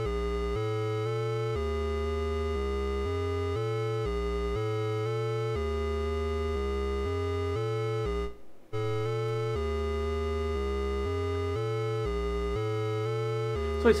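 Sequenced synth bass line from a DIY analogue modular synth: an oscillator played through a vactrol-based low pass gate with the release turned up, stepping through notes about two and a half a second, each note running smoothly into the next with a mellow, laid-back response. It cuts out for about half a second about eight seconds in, then carries on.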